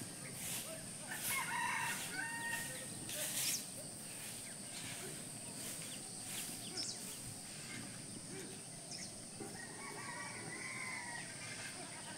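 A rooster crowing faintly, once about a second in and again in a longer call near the end.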